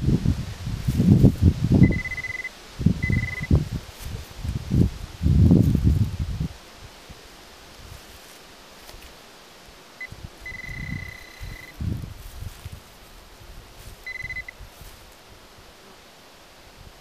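Soil being dug and scraped with a digging knife among grass roots, loud for the first six seconds, then quieter handling of the dirt. Several short steady high-pitched beeps from a metal-detecting pinpointer sound as it finds buried metal in the hole; the longest beep comes a little past the middle.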